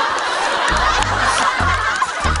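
Several people laughing at once in a dense burst, with no single voice standing out. Background music plays underneath, with a few low bass notes about halfway through and near the end.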